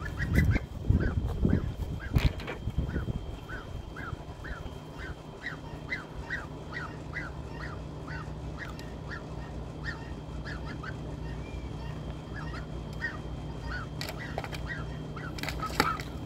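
White domestic goose calling in short, repeated honks, about two a second, that thin out after about ten seconds. A few low knocks sound in the first few seconds.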